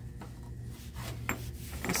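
Faint clinks and rubbing of small textured-glass bottles with faceted glass stoppers being handled on a shelf, over a steady low hum.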